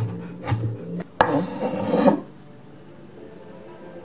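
Kitchen knife slicing fresh ginger on a wooden cutting board: a few sharp chops in the first second, then a rasping scrape about a second long.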